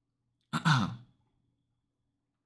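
A man's short sigh about half a second in, voiced and breathy, falling in pitch.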